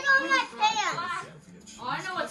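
Excited children's voices, high-pitched and loud for about a second, then dying down to quieter chatter.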